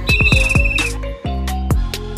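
Background hip-hop style music with falling bass drops. Over it, a single whistle blast just under a second long sounds at the start.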